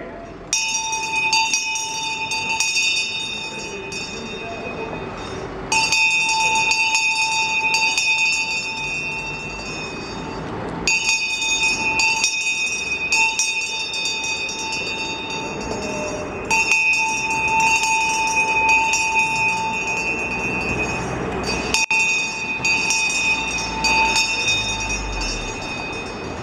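A town crier's brass handbell rung hard in five bouts of a few seconds each. Each bout is a rapid run of strokes that blends into one continuous clanging ring, with short gaps between bouts.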